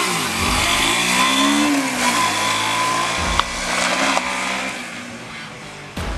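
Honda Shadow V-twin motorcycle passing close by and pulling away, its engine note climbing as it accelerates, then fading into the distance over the last couple of seconds. The engine is running well.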